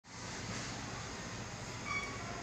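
Steady rushing background noise with a short, faint tone just before the end.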